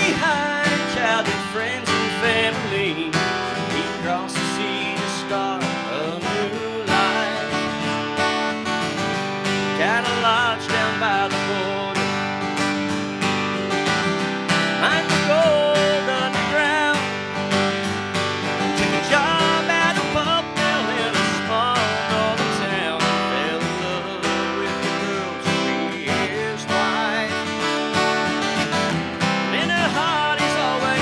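A man singing while strumming chords on an acoustic guitar, a live solo performance.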